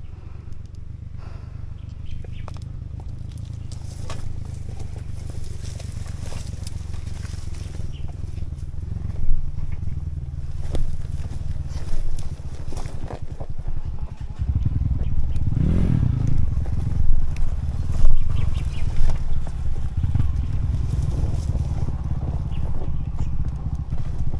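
Dirt bike engine running at low revs on a rough trail, getting louder through the stretch, with a rev up and back down about two-thirds of the way in. Scattered knocks and clicks from the bike over rough ground.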